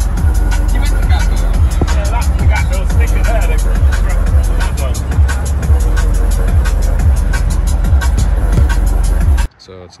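Loud music with a heavy bass and a steady beat, with voices over it and the rumble of a van driving on the road, cutting off abruptly near the end.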